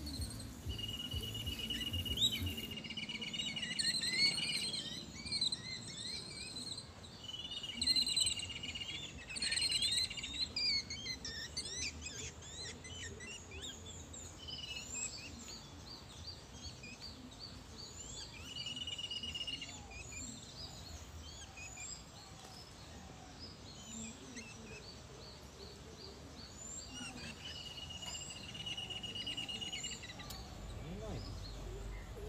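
Several birds chirping and calling, with a few high, steady trills of a second or two each breaking in now and then.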